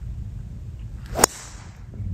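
A driver swung through and striking a teed golf ball: a short rising swish of the downswing, then one sharp crack of impact about a second and a quarter in, with a brief hiss after it. The ball is struck toward the heel of the clubface.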